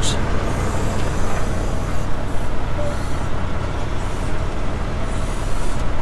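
Heavy diesel engines running with a steady low rumble, heard from inside a semi-truck's cab as a wheel loader works alongside, setting a lumber load onto the flatbed.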